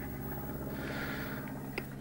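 Steady low electrical hum made of several evenly spaced tones, from the running RCA TK-760 broadcast camera's electronics. A faint click comes a little before the end.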